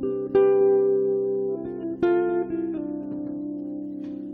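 Guitar notes plucked over a held low drone: one note about a third of a second in and another about two seconds in, each ringing out and slowly fading.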